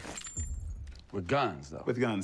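A person speaking in a film clip, starting about a second in, after a brief rattling noise at the very start.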